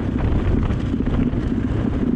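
Dirt bike engine running while riding along a dirt road, with wind buffeting the microphone.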